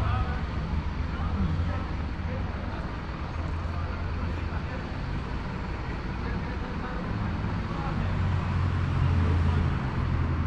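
Outdoor background noise: a steady low rumble with an even hiss over it, growing a little louder in the last few seconds.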